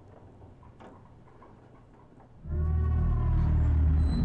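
Faint room tone with a few soft ticks, then about two and a half seconds in a loud, deep droning rumble starts suddenly, with a slowly falling tone above it: an ominous horror-film music sting.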